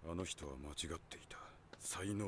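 Speech only: a man speaking a line of Japanese dialogue.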